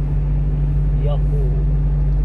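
Steady low drone of a one-ton truck's engine and tyres at highway speed, heard from inside the cab. A man's short shout of "iyaho" comes about a second in.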